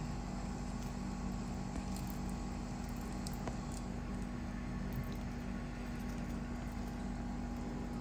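Steady background hum of a running electrical appliance, a low even drone with a few faint clicks.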